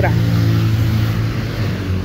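A motor vehicle engine idling steadily, a low even hum, with a rush of broader noise over the first second and a half.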